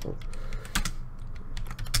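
Typing on a computer keyboard: a run of irregular key clicks as a sentence is typed.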